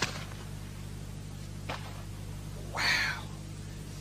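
A person exclaiming "wow" about three seconds in, over a steady low hum from an old recording, with a faint click a little earlier.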